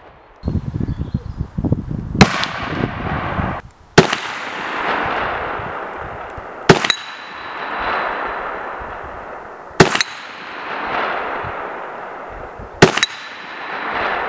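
Red armoured-steel gong target disc hung on steel cables, struck five times about three seconds apart; each sharp clang rings on and fades, with a steady high tone. A low rumble comes before the strikes in the first few seconds.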